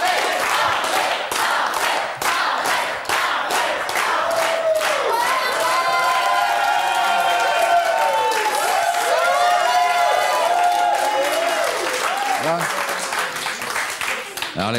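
Studio audience applauding steadily. From about four seconds in, many voices call out and whoop over the clapping, fading back near the end.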